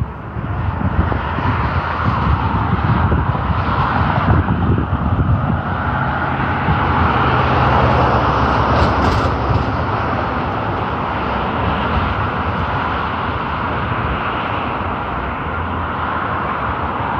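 Road traffic going by on the street, one vehicle's noise swelling to its loudest about halfway through and slowly fading, with wind buffeting the microphone in the first half.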